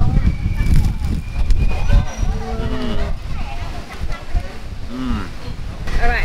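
Closed-mouth "mmm" hums while chewing food, a few short ones sliding in pitch, over a steady low rumble.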